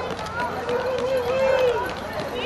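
Sled dogs whining and howling, with one drawn-out wavering howl lasting about a second that falls away at its end, over people talking.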